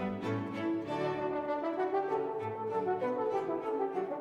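French horn playing a lively solo line in a baroque horn concerto, accompanied by a string ensemble with continuo bass.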